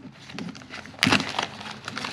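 Clear plastic bag crinkling in gloved hands as a new cable is pulled out of it, with a louder crackle about halfway through.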